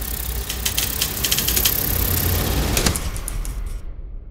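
Film projector sound effect: a running mechanical rattle with many scattered clicks over a low hum and a high hiss, thinning out near the end.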